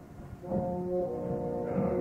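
An opera orchestra in a live performance recording. After a brief lull, sustained chords of several held notes come in about half a second in.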